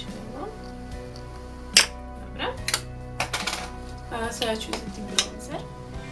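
Makeup items being handled, giving several sharp plastic clicks and clacks, the loudest about two seconds in, over steady background music.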